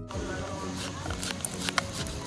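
A knife blade pressed down into raw rice packed in a stainless steel tumbler: a gritty rustle of shifting grains with scattered small clicks.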